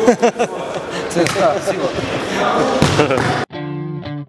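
Voices and ball thuds ringing in an indoor futsal hall. About three and a half seconds in they cut off abruptly, and electric guitar music starts.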